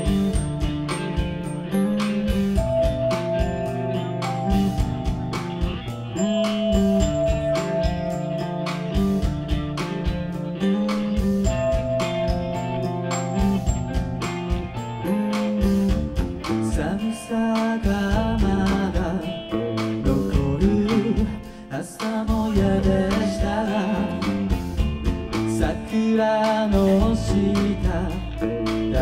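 Live rock band playing: electric guitars over a drum kit's steady beat, with a brief drop in level a little past the middle.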